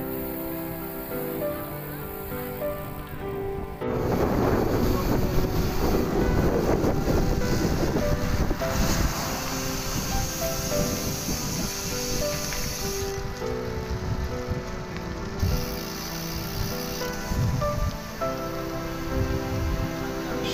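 Background music with a steady melody. About four seconds in, a loud rush of wind noise on the microphone of a camera riding on a moving bicycle cuts in over it, easing off after a few seconds.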